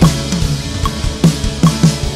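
Live band music with a drum kit up front: sharp drum strikes about two a second over cymbal wash.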